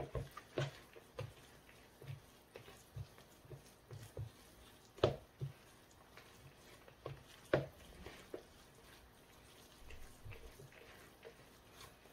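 A gloved hand kneading blanched chwinamul greens with doenjang and gochujang paste in a plastic bowl: soft, irregular squishing and patting, with a few sharper taps, the loudest about five and seven and a half seconds in.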